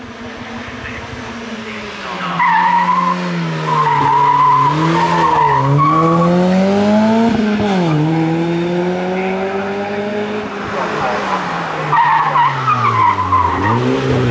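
Mazda Eunos Roadster's four-cylinder engine driven hard up a hillclimb course, its revs climbing and dropping back at gear changes several times. Its tyres squeal through the bends, first about two seconds in and again near the end.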